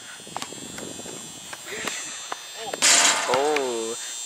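A few faint, sharp knocks of a basketball bouncing on an outdoor hard court. Near the end comes a loud, drawn-out vocal exclamation with a wavering pitch.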